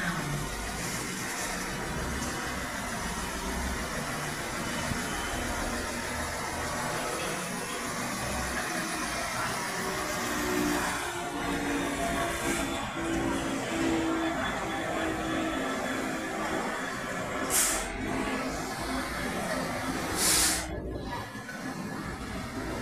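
A Class 66 diesel freight locomotive passing close by, its two-stroke V12 engine note rising to a throbbing tone as it draws alongside about halfway through. Loaded freight wagons then roll past with a steady rumble, and two short sharp hisses come near the end.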